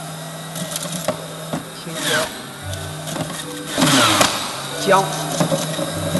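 Electric juicer running with a steady motor hum while fruit and vegetables are pushed down its feed chute. The motor note sags under load twice, about two and four seconds in, with crunching as the produce is shredded.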